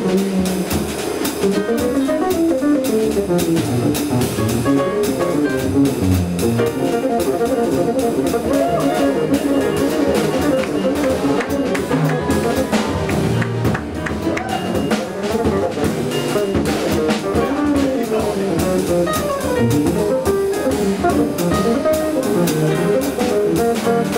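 Live jazz combo playing: an electric bass carrying a quick, busy melodic line, with piano and drum kit accompanying.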